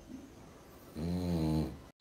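French bulldog snoring while asleep on its back: one low, drawn-out snore about a second in.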